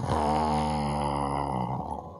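A man's low, drawn-out groan through a handheld microphone. It holds one steady pitch for nearly two seconds and fades out near the end, acting out a dog's sullen reaction.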